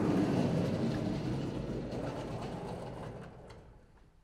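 Vertical sliding chalkboard panels being moved in their frame: a rolling rumble with light rattles, loudest at the start and fading away toward the end.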